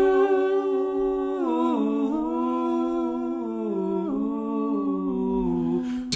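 A cappella blues humming: sustained hummed notes, without words, that step down in pitch a few times, about a second and a half in, near two seconds and again around four seconds.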